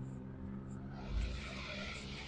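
An SUV driving up from behind and passing close by on a tarmac road: a steady low engine hum, with tyre noise swelling from about a second in. There is a short low thump about a second in.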